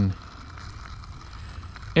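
Quiet outdoor background noise with a low, steady rumble between a man's words, which end just as it begins.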